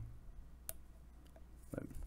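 A single sharp, light click followed by a couple of faint ticks as fingers work a small ribbon-cable connector on the logic board of an opened MacBook 12-inch.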